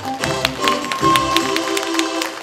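Scattered audience clapping, irregular sharp claps over the band's last sustained notes as the song ends.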